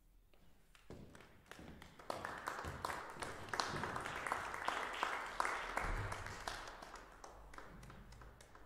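Audience applauding: scattered claps about a second in swell into steady clapping, then thin out near the end.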